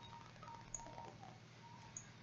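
Near silence: faint room tone with a low steady hum and two small clicks about a second apart.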